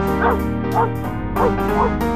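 A schnauzer giving four short whining yelps that rise and fall in pitch, over loud piano-led music.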